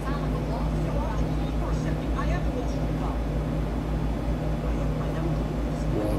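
Distant dialogue from a movie playing on a TV, over a steady low hum.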